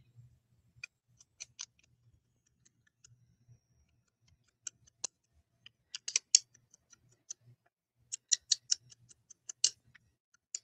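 Small, sharp clicks and taps from an ink blending tool being handled and tapped. They come singly at first, then in quick clusters about six seconds in and again over the last two seconds.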